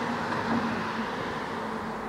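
Steady road traffic noise along a street, with a faint low hum in the first second or so.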